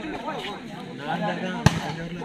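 A volleyball struck hard once, a sharp smack about one and a half seconds in, over low voices of players and spectators.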